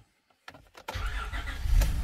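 A 2001 Acura MDX's 3.5-litre V6 being started: the starter cranks it from about half a second in, it catches about a second in, and it runs up to its loudest near the end.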